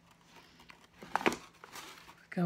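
Packaging crinkling and rustling as it is handled, in a short burst of crackles a little over a second in.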